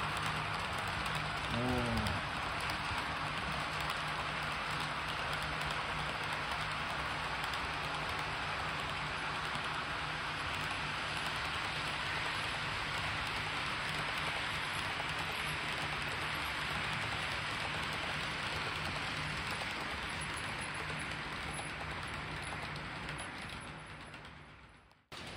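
13 mm gauge model of a Toki limited express train running along the layout's track: a steady hiss of wheels on rail with a low motor hum, fading away near the end as the train moves off.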